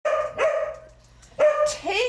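Small black-and-white dog barking three short, high-pitched barks. The last bark, about a second and a half in, is the loudest.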